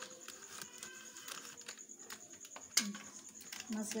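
Scattered light clicks and taps of a kitchen utensil against a metal bowl, with one sharp knock about three seconds in, over faint background music.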